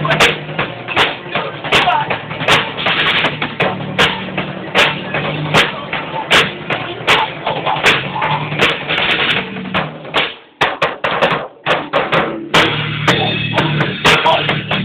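A band rehearsing a song: a drum kit keeps a steady beat under sustained bass and guitar. About ten seconds in, the other instruments drop out for about two seconds, leaving only the drums, then the full band comes back in.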